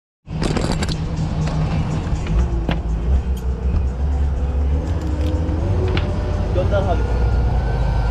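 Parasailing boat's engine running with a steady low rumble, mixed with wind buffeting the microphone. A few sharp clicks come in the first few seconds, and a faint whine rises slightly in pitch near the end.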